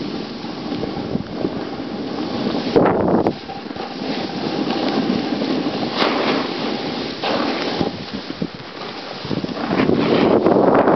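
Wind rushing over the microphone of a camera carried by a snowboarder riding downhill. It is a steady noise with louder surges about three, six and seven seconds in.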